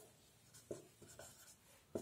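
Marker pen writing on a whiteboard: faint strokes, with two short taps of the pen tip against the board.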